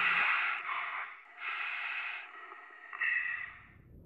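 A person breathing inside a pressure-suit helmet: three breaths, near the start, about a second and a half in, and about three seconds in.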